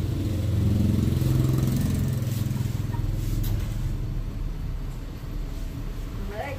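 A low engine rumble of a road vehicle passing, loudest over the first few seconds and then fading away.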